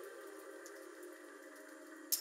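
Quiet sustained synth chord in a dubstep track, held and slowly fading, with a few faint ticks.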